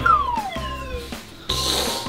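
Edited-in cartoon sound effect: a whistle-like tone falling in pitch over about a second, then a short whoosh near the end, over background music with a steady beat.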